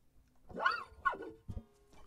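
Two short yelp-like calls, each rising then falling in pitch, the second shorter than the first, followed by a soft knock.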